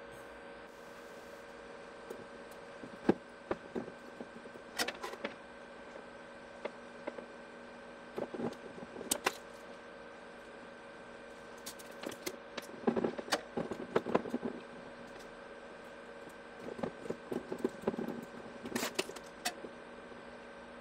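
Small clicks, taps and rustles of hands handling capacitor leads, solder wire, the soldering iron and the circuit board in a metal helping-hands clamp. The sounds come in scattered clusters over a faint steady hum.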